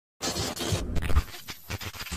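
A scratchy, noisy sound effect opens the track, starting suddenly just after the start. It drops away a little past a second in, leaving a quieter crackle.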